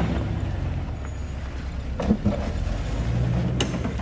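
Soft-top Jeep's engine running at low revs as it crawls down a rutted dirt trail. The engine note rises a little about three seconds in. Two sharp knocks sound about two seconds in and just before the end, from the vehicle working over the ruts.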